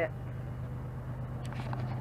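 A truck engine running steadily, a low even hum, as it pulls away towing a travel trailer.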